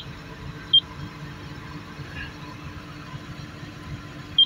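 Two short high beeps from the Komatsu excavator's monitor panel as its keys are pressed, one right at the start and one under a second later, over a steady low rumble.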